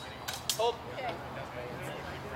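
Steel training swords striking in a fencing exchange: a few sharp metallic hits in the first second, along with a man's short exclamation.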